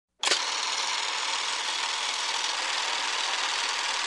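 Steady hiss like static that starts abruptly with a click just after the start and holds at an even level.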